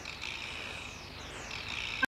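Electronic title-sequence sound effects: several high whistling sweeps falling in pitch, overlapping one another, over a steady high tone.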